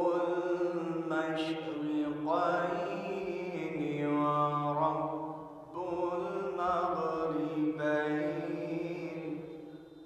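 A man's solo melodic Quran recitation (tilawat) in two long phrases, each note held and ornamented; the second phrase fades near the end.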